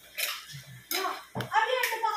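Cutlery clinking against dishes at a meal, with a couple of sharp clinks, one near the start and one near the end, amid voices.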